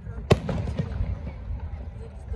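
An aerial firework shell bursting with one sharp bang about a third of a second in, its boom echoing on afterwards.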